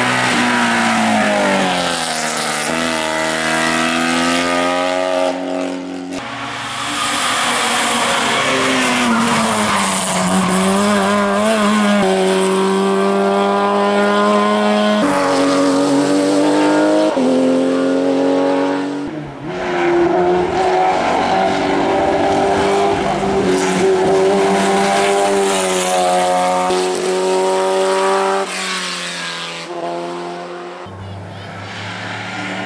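Hill climb race cars at full throttle, one after another, their engines revving hard and climbing in pitch, then dropping at each gear change as they accelerate up the course and pass.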